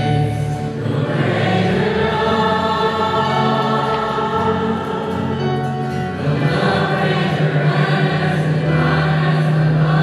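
A church choir singing sustained chords with musical accompaniment, growing fuller and louder after about six seconds.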